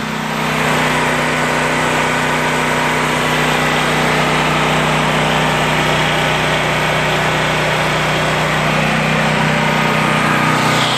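Predator 8750 portable generator's single-cylinder gasoline engine running steadily under load, powering a whole house.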